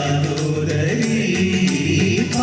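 Male vocals singing a song live over an instrumental accompaniment, with a sustained, gently bending sung line and light regular percussion.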